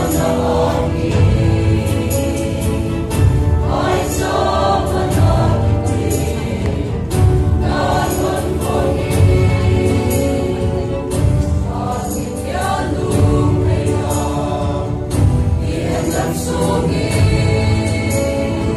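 A mixed choir of young women and men sings together, without a break.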